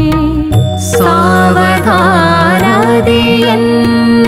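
Kannada devotional song (Dasarapada) in a Carnatic style: a woman's voice enters about a second in with a long, wavering melodic line over steady held tones of the instrumental accompaniment.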